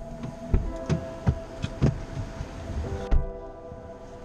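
Two people climbing into the front seats of a 2017 Alfa Romeo Giulia: a string of dull thumps and knocks as they settle, then the car door shutting with the loudest thump about three seconds in, after which the outside hiss stops.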